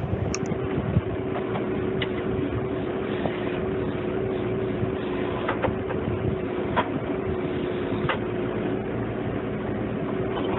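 Engine of a hydraulic tree spade running steadily, a continuous mechanical drone with a held hum, and a few light clicks or knocks scattered through it.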